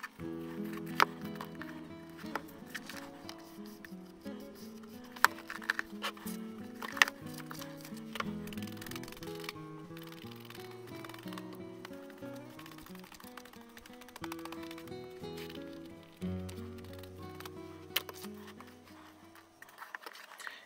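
Background music: a slow tune of held notes changing in steps, with a few sharp clicks.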